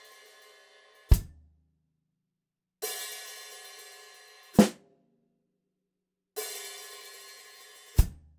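Drum kit played very slowly, one note at a time: open hi-hat strokes that ring and fade for about a second and a half, each cut off by a sharp closed hi-hat hit. The hat is closed with the bass drum about a second in, with the snare past the middle, and with the bass drum again at the very end. The pattern alternates open and closed hi-hats over a bass-snare backbeat.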